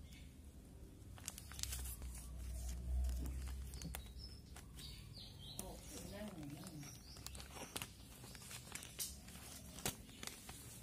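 Plastic shipping mailer bag crinkling and tearing as it is opened by hand, in a scattered run of short sharp crackles.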